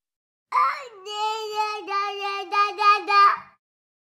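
A high, child-like voice cooing in baby talk. It sings one long note that slides down at the start, then holds a steady pitch with several quick breaks, and it stops shortly before the end.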